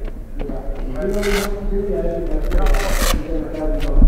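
Indistinct talking, with two short hissing noises in the middle.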